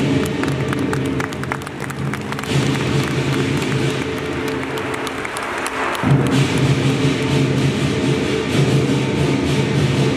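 Lion dance percussion: a large lion drum with clashing cymbals, playing continuously. The deep drum sound falls back for a few seconds in the middle, leaving mostly the cymbal strokes, and comes back strongly about six seconds in.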